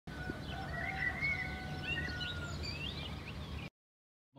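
Small birds chirping and calling, with short rising and falling chirps and a few held whistled notes, over a steady low background hum. The sound cuts off abruptly near the end.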